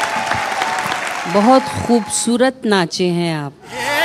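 Studio audience applause, tailing off during the first second, followed by a voice speaking a few words.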